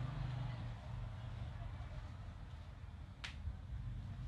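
One sharp skin slap about three seconds in, from barefoot shadowboxing as she practices high blocks, over a steady low hum.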